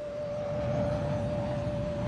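A low rumbling sound effect of a futuristic flying craft, growing about half a second in, over a single steady humming tone.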